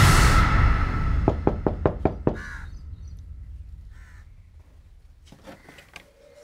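Background music fades out, then a quick run of about eight sharp knocks a second in, followed by two short calls a second and a half apart and a few faint clicks near the end.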